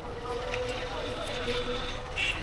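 Motorcycle riding slowly through a busy street: a steady engine hum with low wind rumble on the microphone and voices around it.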